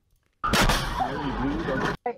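Dashcam audio of a car collision: a sudden loud crash about half a second in, then a noisy rumble with a person's voice shouting over it, cut off abruptly after about a second and a half.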